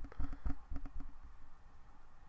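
A quick run of soft clicks from a computer mouse being operated at a desk, most of them in the first second.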